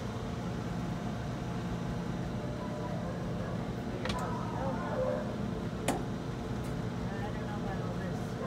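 A single sharp door click about six seconds in, as the round loading door of a UniMac commercial washer-extractor is pushed shut, over a steady low hum.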